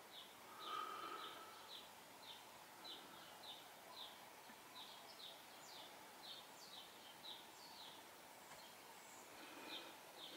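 Faint bird chirping over near-silent room tone: a short, high chirp repeated about twice a second.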